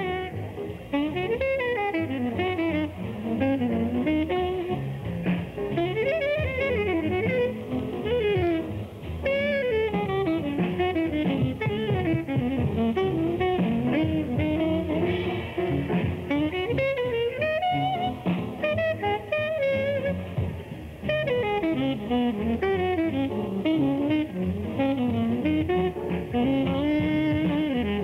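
Jazz-style instrumental music: a wandering lead melody over steady band accompaniment, playing continuously.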